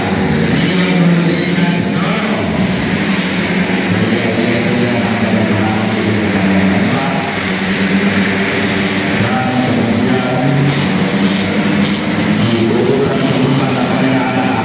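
A pack of race-tuned 150 cc automatic scooters running at high revs, engine pitch rising and falling as they pass, mixed with music.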